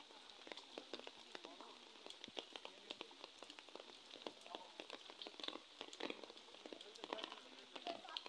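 Light rain pattering faintly, a loose, irregular scatter of small ticks.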